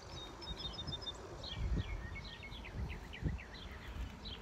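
Songbirds chirping: a quick run of about five evenly spaced high notes about half a second in, then a string of short falling chirps, over a low uneven rumble.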